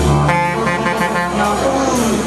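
Live noise-rock band with saxophones and bass: a saxophone holds a bright, reedy note for about a second over the bass, with no settled beat.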